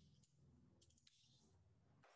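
Near silence, with a few faint clicks about a second in.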